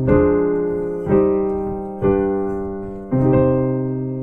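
Piano playing block chords that tonicize the key of C minor: four chords struck about a second apart, each held and fading until the next.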